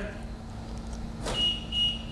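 Two short, high-pitched beeps in quick succession from a Toyota car answering its keyless-entry remote, about a second and a half in, over a low steady hum. They are the car's response to the remote working again on a fresh CR2016 battery.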